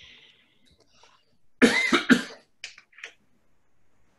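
A person coughing twice in quick succession a little before halfway, with a couple of softer short sounds just after.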